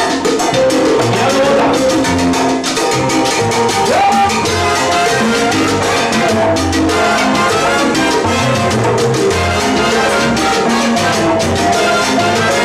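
Live salsa orchestra playing a steady, loud montuno groove: timbales, congas and bongó driving the rhythm under piano, bass and a horn section of trumpets, trombone and alto saxophone.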